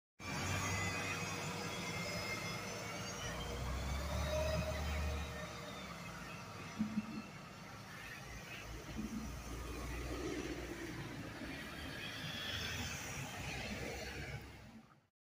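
A city transit bus pulling away and driving off down the street, its engine rumble strongest a few seconds in and then fading as it moves away, with other street traffic behind it.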